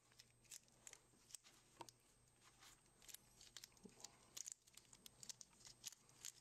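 Near silence, with faint scattered crinkles and ticks from gloved hands kneading two-part epoxy putty.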